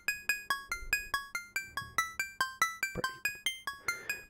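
Logic Pro X Drum Synth '80s Cowbell' preset, an 808-style tuned cowbell, playing a fast phonk lead melody: short two-tone pings, about eight or nine a second, stepping up and down in pitch.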